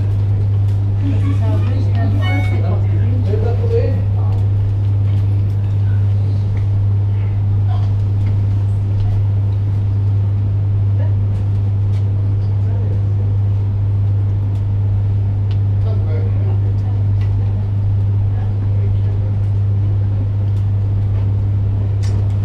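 A steady low hum that does not change in level throughout. Faint background voices come and go, mostly in the first few seconds and again a little after the middle.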